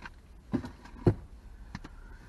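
Three short, light clicks or knocks a little over half a second apart, the middle one loudest: handling noise from small objects being handled in the lap, inside a car.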